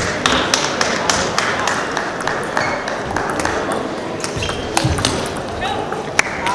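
Table tennis balls clicking irregularly on tables and bats in a large sports hall, many sharp ticks scattered through, with voices in the background.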